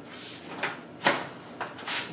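Double-wall 6-inch stovepipe sections being slid one inside the other: a few short sheet-metal scrapes, with a sharper knock about a second in.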